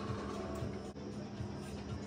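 Steady hiss of a bench-mounted glass lampworking torch flame, over a constant low hum.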